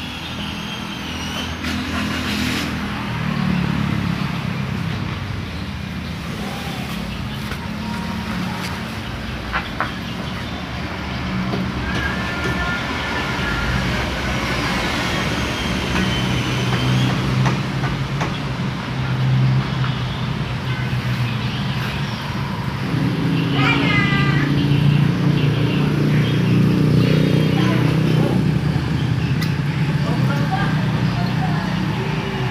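Workshop background sound: an engine running steadily, louder in the second half, with voices in the background and a few sharp metallic clicks.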